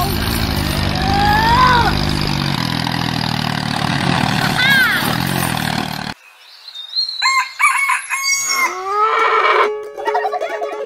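Dubbed tractor engine sound running steadily with a noisy rattle, with short rising cartoon-voice exclamations over it; it cuts off suddenly about six seconds in. After a brief gap come farm-animal calls, among them a rooster crowing.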